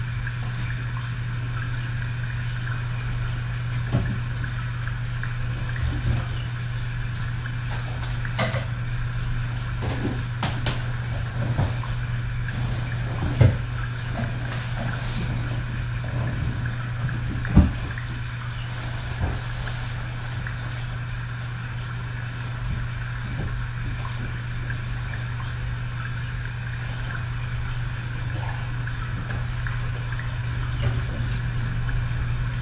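A steady low electrical or mechanical hum, with scattered light knocks and clicks of objects being handled, the two loudest knocks near the middle.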